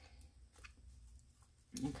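Near silence: low room hum with one faint click about two-thirds of a second in.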